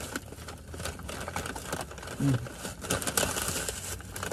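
Packaging being handled, a run of irregular short crinkles and rustles, with a brief hum from a voice about two seconds in.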